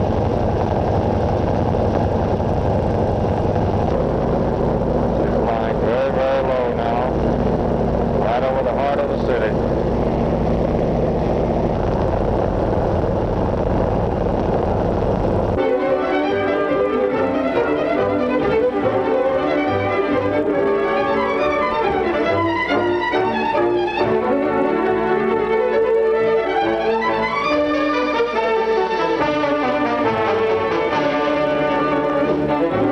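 Steady low drone of the airship's engines and propellers, cutting off suddenly about halfway through. Orchestral music led by violins follows.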